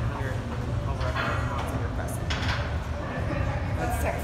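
Indistinct voices over a steady low hum of a large gym room.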